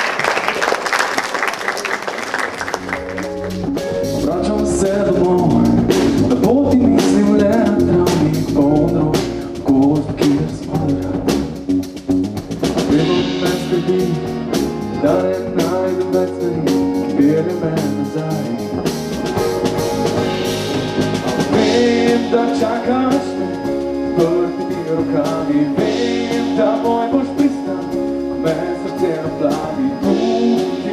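Applause dies away in the first few seconds, then a live band plays a song: drum kit, acoustic guitar and keyboard, with a woman singing lead.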